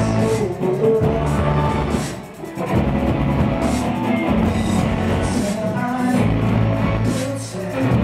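Indie pop band playing live: electric guitar, band and sung vocals, dancy and loud. The music dips briefly twice, about two seconds in and near the end.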